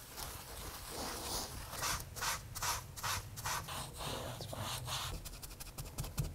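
A dye-soaked cloth rag rubbed over leather in a run of short wiping strokes, about three a second, coming quicker near the end.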